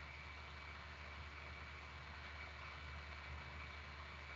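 Faint steady room tone through an open video-call microphone: a low hum and light hiss with a thin, steady high whine.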